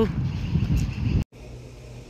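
Loud low outdoor rumble of vehicle and street noise, cut off abruptly a little over a second in. A much quieter, steady low hum of a small indoor room follows.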